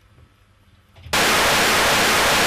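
Television static: a sudden, loud, steady hiss of an untuned analogue TV channel cuts in about a second in, after a near-quiet start.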